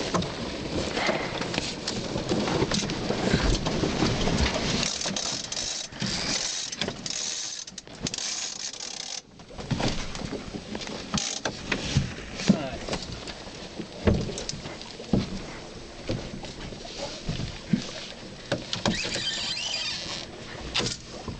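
Wind buffeting the microphone and water rushing along a small sailboat's hull as it comes about in gusty wind, with scattered knocks and rattles from the rigging and lines.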